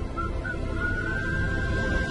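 A person whistling a tune over the song's instrumental accompaniment: two short whistled notes, then one long held whistled note starting about a second in.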